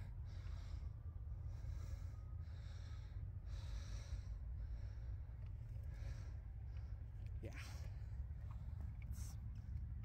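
Several soft breaths close to the microphone over a steady low rumble, with a single click near the end.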